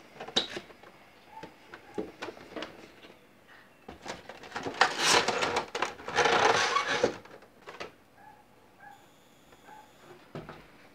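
A cardboard figure box being opened by hand and its clear plastic blister tray slid out: scattered clicks and taps of card and plastic, then two longer stretches of crinkling, scraping plastic around the middle.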